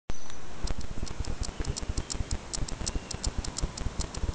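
A small carving tool cutting into a clay bowl: a quick run of light ticks and scrapes, about five a second, with soft knocks from the bowl and board being handled.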